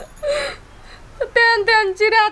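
A woman's tearful crying: a breathy sob, then from a little past the middle a loud, high-pitched wailing cry that wavers and breaks.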